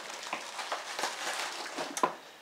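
Hands rummaging through shredded cardboard packing in a cardboard box, the packing rustling and crackling in a run of small irregular crackles.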